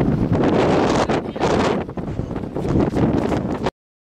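Heavy wind buffeting the microphone, a loud rush of noise that cuts out abruptly near the end.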